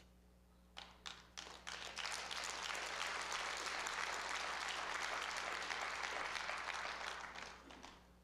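Congregation applauding: a few scattered claps about a second in swell into full applause, which fades away near the end.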